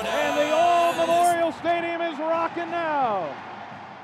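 An excited man's voice in long, drawn-out shouts that break off several times, then a falling cry about three seconds in, all fading out toward the end.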